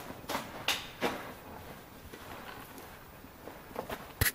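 Footsteps of a hiker walking on the sandy slot-canyon floor: three short crunching steps in the first second, then only faint scuffs.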